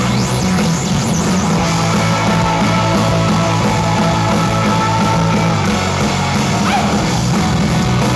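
Live rock band playing loud, with distorted electric guitars, bass and drums, instrumental with sustained guitar notes.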